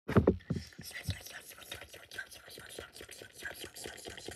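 Slime being handled and stretched by hand: a quick, irregular run of small wet clicks and crackles, after a few louder knocks in the first second.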